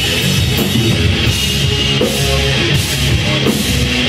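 Hard rock band playing live and loud: distorted electric guitar and bass over a drum kit, with cymbal crashes recurring on a steady beat.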